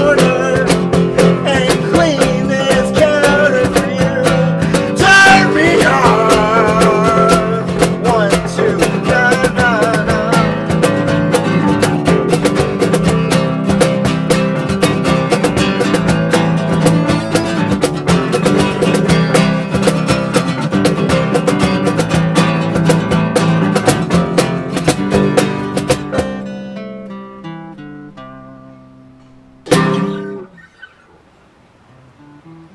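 Acoustic band playing a folk song: strummed acoustic guitar with bass guitar and cajón, and a voice singing in the first several seconds. The playing stops about four seconds before the end and the last chord rings away, then a single sharp knock comes near the end.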